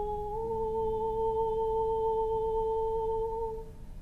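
A soprano holds the long closing note of the lullaby, stepping up slightly about a third of a second in, then fading away shortly before the end. A low theorbo note sounds softly beneath.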